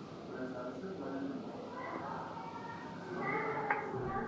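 Faint background voices, with a sharp click near the end.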